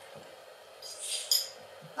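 A quiet pause, then about a second in a short, hissy intake of breath close to a handheld microphone, just before speech resumes.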